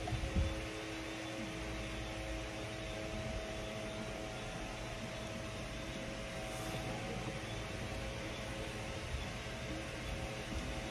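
Steady room noise: an even hiss with a faint mechanical hum, with a couple of low knocks right at the start.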